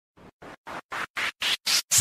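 Music intro: eight short noisy hits, about four a second, each louder and brighter than the last, building up into the song's beat.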